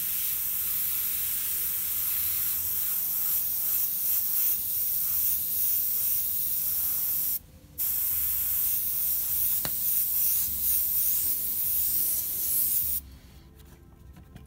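Gravity-feed airbrush spraying paint with a steady hiss of air. The hiss breaks off briefly about halfway through and stops shortly before the end.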